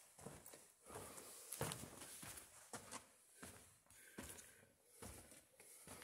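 Faint footsteps and scuffs on rocky ground, an irregular step about every half second.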